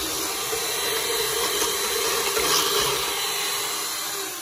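Black and Decker electric hand mixer running steadily, its twin beaters whisking cake batter in a stainless steel bowl, with a constant motor hum that eases slightly near the end.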